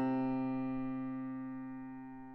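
Solo piano chord struck just before and left to ring, its sustained notes fading slowly with no new notes played.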